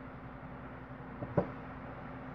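A steady low hum, with two quick clicks about a second and a half in, the second one sharper and louder.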